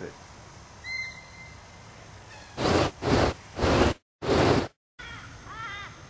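A bird giving four loud, harsh caws in quick succession, the last the longest. The sound drops out abruptly twice between the last calls.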